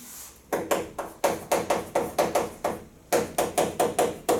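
Chalk writing on a chalkboard: a quick run of sharp taps, about six a second, with a short break a little under three seconds in.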